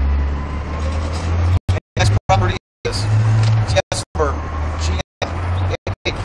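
Steady low rumble of a motor vehicle's engine running close by, with indistinct voices over it. The sound cuts out to silence for a moment several times.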